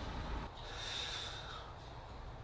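A man breathes out once, a breathy exhale lasting about a second, over a low steady room hum.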